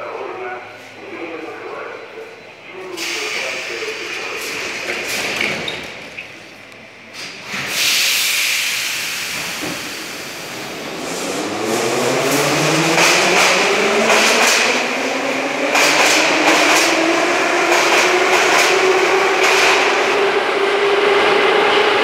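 Blue 81-717/714 metro train pulling out of the platform: a knock about seven and a half seconds in, then the traction motors' whine rising steadily in pitch as the train speeds up, loudest in the second half.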